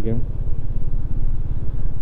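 Motorcycle engine running steadily under the rider while cruising along a road, a fast, even low pulsing from the exhaust with no change in pace.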